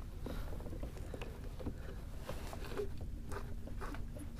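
Low steady rumble of water around a kayak hull, with faint irregular clicks and taps from the rod, reel and kayak gear being handled during the fight with a hooked fish.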